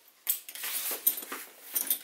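Fabric rustling and light metallic clinks from a bag's strap clips and hardware as the bag is handled and the strap is lifted over the head to wear it crossbody.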